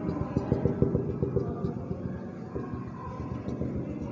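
Marker pen tapping against a whiteboard while stippling dots, a quick run of taps in the first second and a half, then scattered taps.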